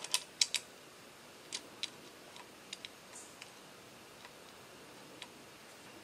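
Light, scattered clicks of a small machine screw and metal clamp parts being handled as the screw is started by hand into a drone's landing-gear clamp: a quick run of four at the start, then a few sparse ones, over quiet room tone.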